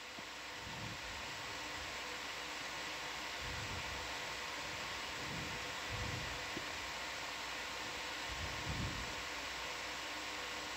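Steady hiss of background noise with a faint hum running through it, and a few soft low rumbles now and then.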